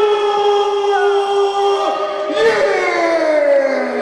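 A ring announcer's voice drawing out a wrestler's name: one long held note, then a second syllable starting about two and a half seconds in that slides steadily down in pitch.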